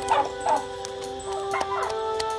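Background music of steady held notes, with a run of short sliding yelp-like calls at the start and another shortly before the end.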